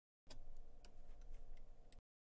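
Faint, scattered clicks from a computer keyboard and mouse over a low room hum, starting from dead silence about a quarter second in.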